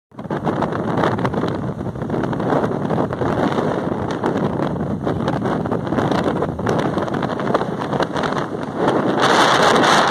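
Wind rushing over the microphone with the road noise of a moving vehicle, a steady noisy rumble that gets louder and harsher a little before the end.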